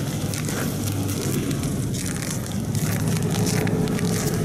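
A car engine running at idle, a steady low hum, under rough crackling wind and handling noise on a handheld camera's microphone.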